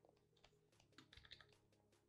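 Near silence with faint, scattered clicking of a computer keyboard, thickest about a second in, over a faint low hum.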